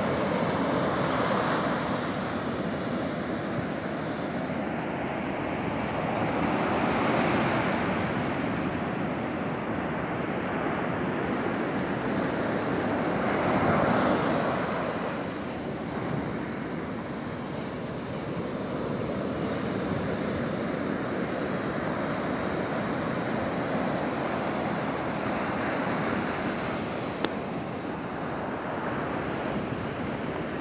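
Ocean surf breaking and washing up a sandy beach, a steady rush that surges louder every several seconds as waves come in.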